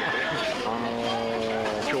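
A man's voice in an interview, holding one long, level vowel for about a second in the middle of his sentence, over steady background noise.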